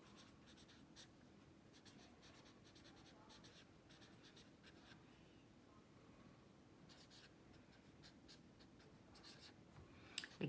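Faint scratching of a pen writing on notebook paper: short strokes in quick runs, with a pause partway through.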